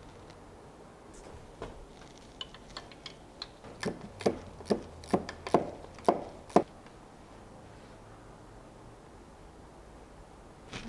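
An irregular run of about a dozen light metallic clicks and clinks from a loosened bolt, hand tool and bracket being handled under the car, the last few the loudest.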